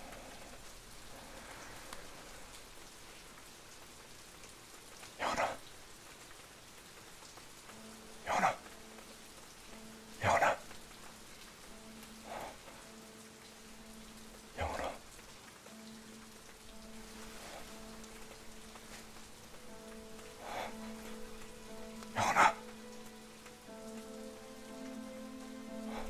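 Steady rain falling, with several brief sharp sounds standing out every couple of seconds. A low, sustained musical drone comes in about a third of the way through and holds to the end.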